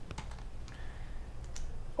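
A pause between speech: a low steady hum with a few faint clicks.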